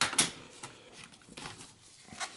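Two sharp plastic clicks from a Dell Studio XPS 1640's battery release latch, then faint handling noise with a few small ticks as the battery pack is lifted out of its bay.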